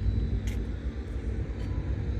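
Steady low outdoor rumble, with a faint tick about half a second in.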